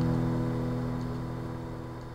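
A chord strummed on an acoustic guitar ringing out and fading steadily, with no new strum: the guitar's closing chord dying away.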